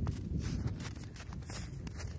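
Footsteps on snow, several irregular soft steps, over a steady low rumble on the microphone.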